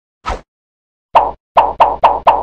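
Cartoon pop sound effects timed to animated end-card graphics: one short pop, then about a second in a quick run of louder pops about a quarter of a second apart.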